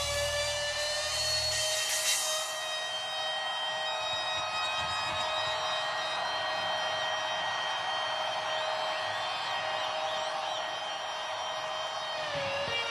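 Electric guitar holding one long sustained note as a steady ringing tone. The rest of the band's low end drops out about two seconds in. Faint whistles rise and fall above it later on.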